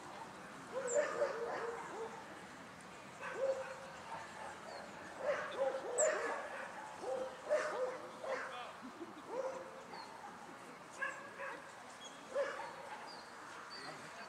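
Dogs barking and yelping in short, scattered calls, one every second or so.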